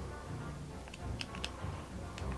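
Quiet background music, with a few short clicks about a second in from handling a small plastic power bank while fiddling for its flashlight button.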